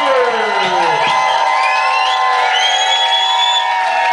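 Concert crowd cheering and whooping, with falling shouts early on and high gliding whistles over the steady roar of voices.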